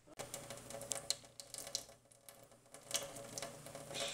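Water dripping and trickling from a kitchen faucet onto a stainless steel sink basin, an irregular run of small ticks and taps, with a faint steady hum underneath.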